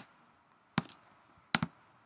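Four sharp, isolated clicks of computer input (keystrokes and mouse clicks) while editing code, unevenly spaced, the last two close together.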